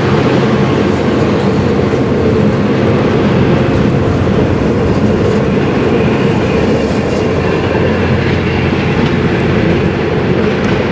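V/Line N-class locomotive-hauled passenger carriages rolling past on the rails, a loud, steady rumble with the wheels clacking over the rail joints.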